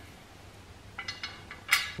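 Light metal clinks as a tubular crash bar with its bolts loaded is fitted against the motorcycle's rear brackets: a few small ringing clinks about halfway through and a sharper one just before the end.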